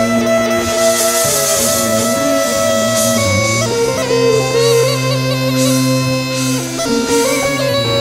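Instrumental music: a Bulgarian gaida (bagpipe) playing a held, ornamented melody over steady low notes, with band accompaniment.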